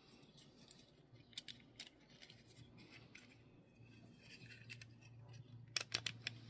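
Faint clicks and taps of a die-cast Datsun 510 wagon model's metal body and plastic insert being handled and pressed back together, with a sharper pair of clicks near the end.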